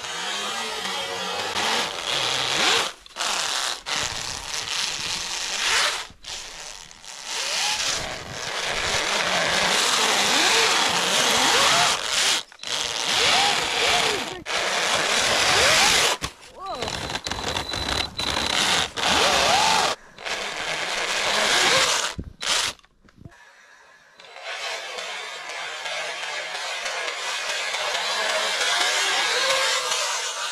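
3D-printed Alpha 6 RC snowmobile driving through deep snow, its motor whining up and down with the throttle and its track churning snow. It comes in bursts broken by short pauses, with a longer lull a little past the two-thirds mark before it runs steadily again.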